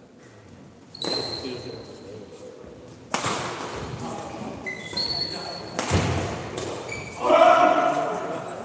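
Badminton rally on an indoor court: shoes squeak briefly on the floor a few times, with two sharp thuds of footwork or shots. A voice calls out loudly near the end.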